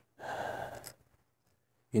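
A person sighing once, a breathy exhale just under a second long. A spoken word begins near the end.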